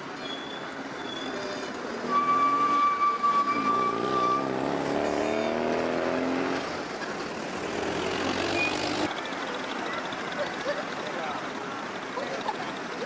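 Busy city street traffic, with motor vehicles running past. In the middle, a passing vehicle's engine rises and falls in pitch. About two seconds in, a steady high tone sounds for a couple of seconds and is the loudest part.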